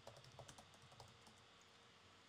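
Faint typing on a computer keyboard: a quick run of keystrokes in about the first second.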